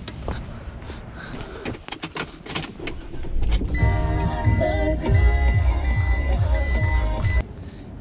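Scattered clicks and knocks at first. About halfway through, music with a heavy, regular bass beat plays on the van's radio, with a high beeping tone that repeats over it, and it cuts off suddenly shortly before the end.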